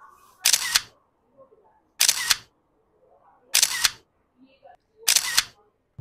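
Camera shutter clicking four times, evenly about a second and a half apart, each click sounding the same.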